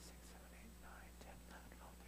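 Faint voices of people greeting one another across a room, soft and scattered, over a steady low hum.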